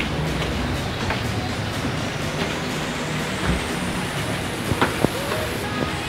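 Steady indoor background noise with faint music, and a few light knocks near the end.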